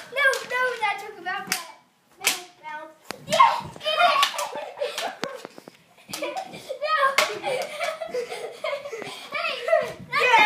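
Children's voices calling out and exclaiming during a knee hockey game, broken by several sharp knocks of mini plastic hockey sticks striking the ball and each other.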